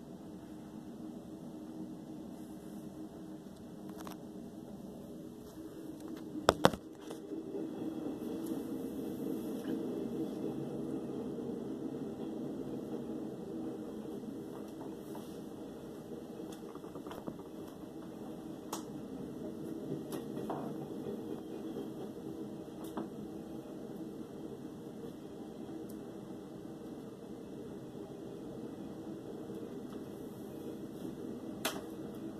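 A switch clicks twice about six and a half seconds in, and an electric fan then runs with a steady hum, louder than the fainter hum before the click.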